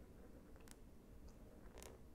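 Near silence with two faint, short scratches of a felt-tip marker stroked quickly across drawing paper, about a second apart.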